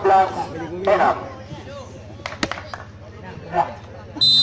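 Men's voices and background chatter from players and spectators, loudest in the first second. A couple of sharp clicks come a little over two seconds in.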